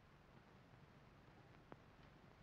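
Near silence: faint steady hiss of an old film soundtrack, with one soft click near the end.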